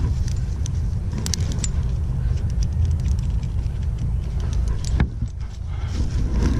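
Wind rumbling on the microphone, with scattered sharp clicks and clinks of metal carabiners and rope hardware on a tree climber's harness; one louder clack about five seconds in.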